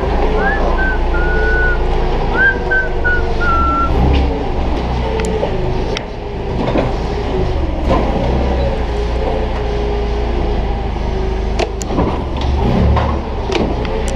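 Forklift running inside a trailer, with a steady low motor rumble. A few short high tones sound in the first four seconds, and sharp knocks and clanks come later on.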